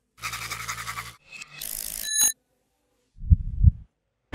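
Logo sound effects: a buzzing whoosh for about a second, then a rising swish that ends in a short, bright ping. Near the end come two low thuds.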